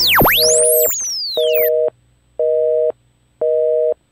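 Synthesized electronic outro sound effect: swooping sweeps rising and falling over the first second and a half, with a two-tone electronic beep repeating four times, once a second, like a telephone busy signal.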